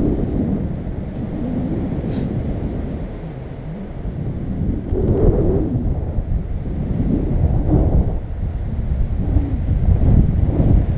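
Wind buffeting the camera's microphone in flight under a tandem paraglider: a loud, gusting low rumble that eases off briefly and swells again about five seconds in.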